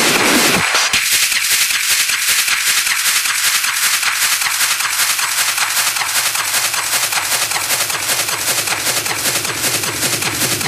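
Hard techno in a build-up: a rushing noise sweep ends about a second in, then the kick and bass are gone and a fast, even roll of sharp percussive hits repeats.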